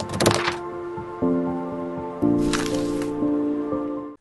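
Intro jingle for an animated logo: held synth chords that change twice, with crackling, swishing effects near the start and again in the middle, cutting off suddenly at the end.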